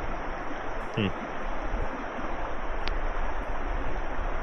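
Steady rushing of a fast, shallow river flowing past the wading angler.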